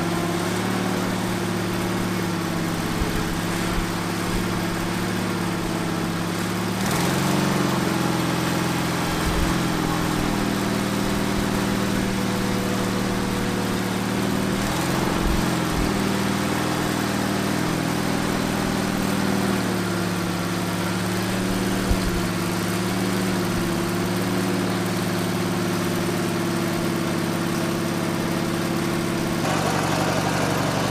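MTD 995 series garden tractor engine running steadily while driving a Kwik-Way front loader, its note shifting a few times. One sharp knock comes about 22 seconds in.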